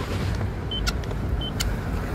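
Handheld paint thickness gauge giving two short high beeps, each followed by a light click, as it takes readings of the paintwork on a car body. Steady low background noise runs underneath.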